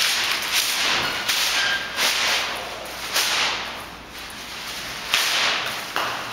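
A run of sharp swishing noise bursts, five or six in all, each starting suddenly and fading within about a second: rushing and handling noise on a handheld camera's microphone as the camera is swung about.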